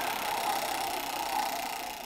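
A large prize wheel spinning, its pointer running over the pegs in a fast, continuous rattle that fades slightly toward the end.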